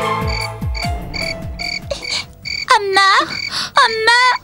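Film soundtrack night ambience: frogs croaking in a steady repeating pattern over the background score, with low falling drum hits in the first half. Two longer wavering calls come near the end.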